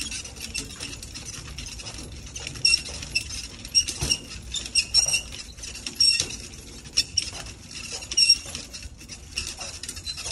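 Rustling handling noise with irregular light clicks and metallic clinks, roughly one a second, as a handheld phone is carried and moved around.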